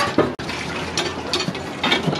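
A potato being peeled against a fixed curved boti blade: about four short scraping cuts through the skin.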